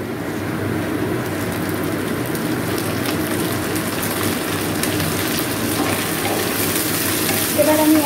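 Cut onion flower stalks sizzling steadily in hot oil in a wok, just added to fried onions. Light scraping clicks of a spatula stirring them come in the second half.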